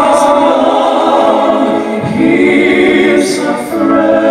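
Five male voices singing sustained notes in close harmony through stage microphones, moving to a new chord about halfway through.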